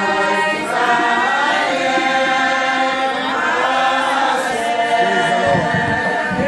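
Several voices chanting a hymn together, holding long notes that glide between pitches.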